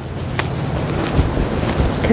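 Wind buffeting the microphone with a steady low rumble. A sharp click comes about half a second in, and a few dull low thumps come in the second half.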